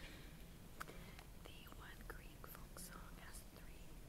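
Faint whispering close to the microphone in a hushed hall, with a few small clicks and rustles.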